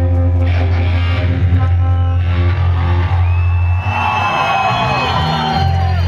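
Live rock band playing loud through a PA: a held low bass note under ringing, sustained guitar chords, with a few whoops from the crowd about four seconds in.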